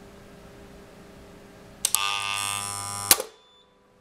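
A click as a 300 A test current (six times rated) is switched into the middle pole of an AP50 circuit breaker, then a loud electrical buzz for about a second and a quarter, cut off by a sharp click as the breaker trips. The trip comes after about 1.2 s, faster than the 1.5 to 10 s its time-current characteristic allows at six times rated current.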